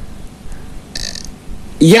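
A man's voice pausing mid-sentence, with a short faint hiss about a second in, then his speech resumes loudly near the end.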